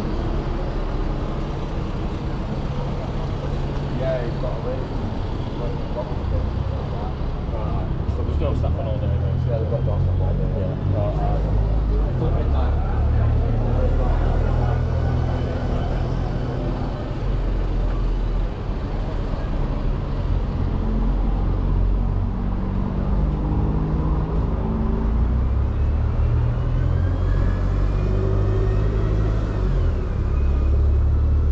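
Town-centre road traffic at a junction: car and bus engines running with a continuous low rumble as vehicles pass and pull away. Near the end an engine note rises as a vehicle accelerates.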